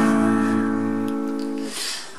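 Acoustic guitar chord strummed and left ringing, fading slowly, with a light brush of the strings near the end.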